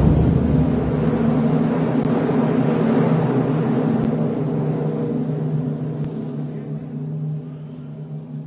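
Procession brass band holding a low, sustained chord that rings on from a bass drum and cymbal stroke at the very start, slowly fading over several seconds.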